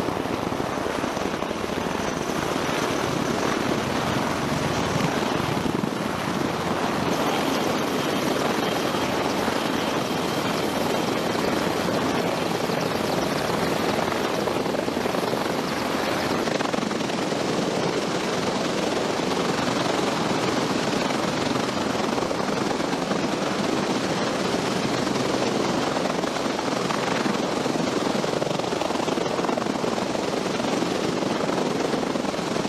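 Steady rotor and turbine noise from a Marine UH-1Y Venom helicopter turning on deck, with an MV-22 Osprey tiltrotor flying close by.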